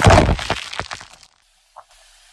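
A car tyre crushing a row of full aluminium soda cans: a rapid run of cracks and pops as the cans split and burst, loudest at first and dying away after about a second.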